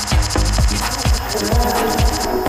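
Electronic house music from a live set: a steady kick drum at about two beats a second, with a fast, high-pitched rattling electronic layer over it.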